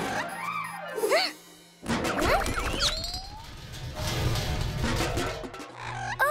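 Cartoon soundtrack music with sound effects: quick sliding tones in the first second, a sudden crash about two seconds in, then a rising whoosh and a busy, noisy stretch.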